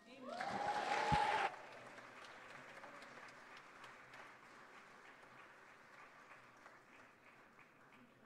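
Congregation applauding at the end of a child's song. It is loudest for the first second and a half, with a single low thump about a second in, then goes on softer and thins out as the claps die away.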